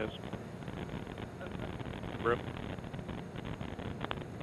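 Atlas V rocket's RD-180 first-stage engine heard from afar during ascent: a steady, crackling roar. A single word of launch commentary breaks in about two seconds in.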